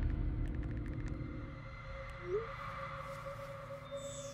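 Quiet, tense film-trailer ambience: a low rumble fades away under a faint steady hum, with a few faint ticks in the first second and one short rising blip a little past two seconds in.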